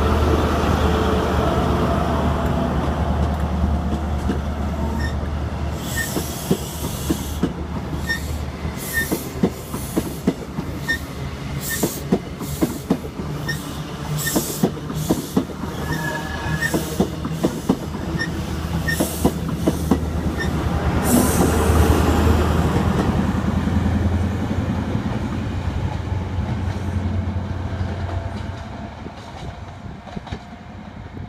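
CrossCountry HST with Class 43 power cars passing close by: first the steady hum of a power car's diesel engine, then the wheels of the coaches clicking rhythmically over rail joints and points. The engine hum swells again about two-thirds of the way in as the second power car passes, then everything fades as the train draws away.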